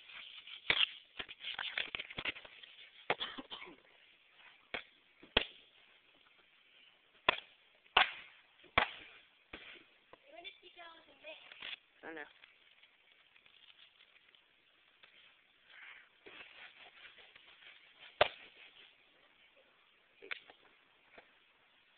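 Sharp knocks and cracks of a cheap wooden skateboard deck being struck and forced to break it apart. The hits come irregularly, about a dozen of them, loudest around eight seconds in, with a brief wavering, squeaky sound in the middle.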